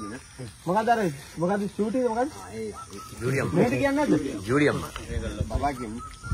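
Speech: people talking in short phrases, with brief pauses between them.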